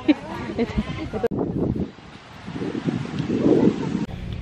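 People's voices talking in the background. About a second in the sound changes abruptly to a windy, noisy outdoor background with faint voices, which grows louder toward the end.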